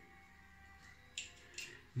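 Quiet room with two brief, faint clicks from the safety razor being handled, about a second in and again shortly after.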